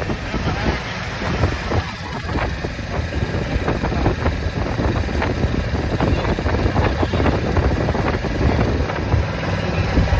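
Wind buffeting the microphone: a steady low rumble broken by many short gusty knocks.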